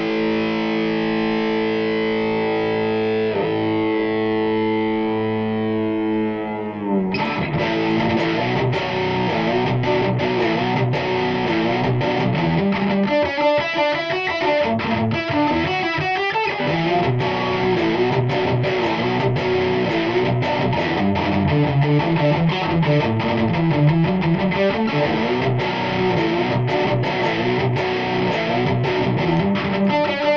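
Distorted electric guitar played through an amplifier stack in a heavy, progressive metal style. A held chord rings out for about seven seconds, then fast, heavy picked riffing starts abruptly.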